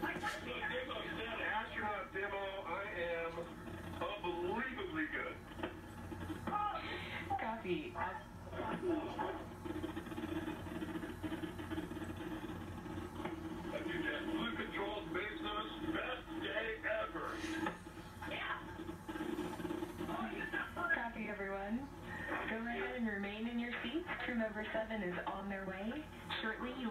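Voices over a narrow-band radio link, played through a television speaker and hard to make out: the capsule crew's post-landing status check.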